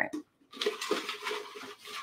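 Folded paper slips rustling and rattling inside a tumbler as it is shaken to mix them, starting about half a second in.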